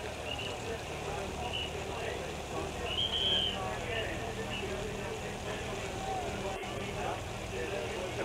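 Steady low engine hum from the race convoy of team cars and motorbikes around the riders, with faint voices underneath.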